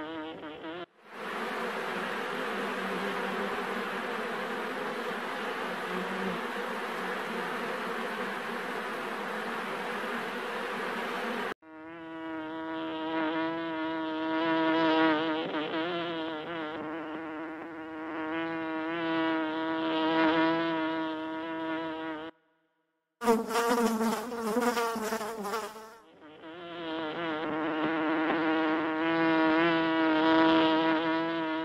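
Honey bees buzzing, a many-layered pitched drone that wavers slightly in pitch. A dense, hissing swarm sound takes over for about ten seconds. After a second-long break a little past twenty seconds, the buzz returns near the end.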